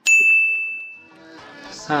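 A bright 'ding' sparkle sound effect: one high ringing tone struck sharply at the start that fades out over about a second. Soft music comes in during the second half.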